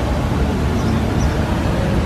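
Steady splashing hiss of a plaza fountain's water jets falling into its basin, over a low rumble of street traffic.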